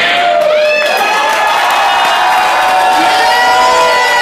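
Audience cheering and whooping loudly, with long drawn-out 'woo' calls that slide up and down over the crowd noise.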